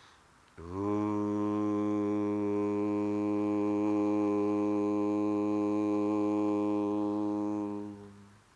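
A man's voice chanting one long, steady "Om" on a single low pitch, starting about half a second in and held for roughly seven seconds, its brighter overtones fading shortly before it closes.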